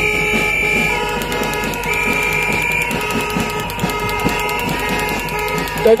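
Several horns blown together in long, steady, overlapping tones, a high one sounding twice in the first three seconds, over a fast clatter. The crowd is answering the speaker with noisemakers.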